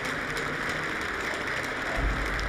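Steady applause from a large gathering of legislators.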